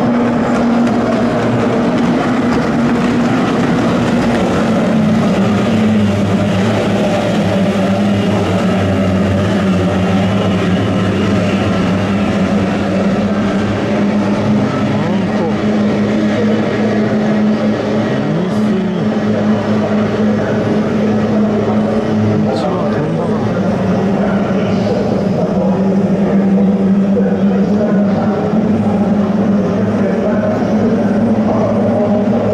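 Several kyotei racing hydroplanes' two-stroke outboard engines running at full throttle together in a steady, overlapping drone. About halfway through, their pitches rise and fall past one another as the boats turn and pass.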